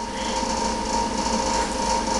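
Steady mechanical hum with a faint constant high whine, unchanging throughout.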